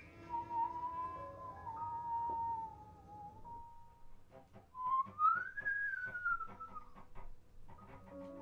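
Free improvised music: a single high, whistle-like tone wavers and slowly sinks over the first few seconds, then after a short gap slides up and back down again. It sits over faint held lower notes, and a run of quick clicks comes in the second half.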